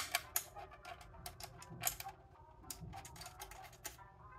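A screw being turned by hand into a monitor stand's sheet-steel base plate: a run of small, irregular metal clicks and ticks, with one sharper click at the start.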